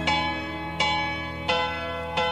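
Intro of a recorded 1970 pop song: a bell struck about every three-quarters of a second, each stroke ringing and fading, over a held chord in the orchestral arrangement.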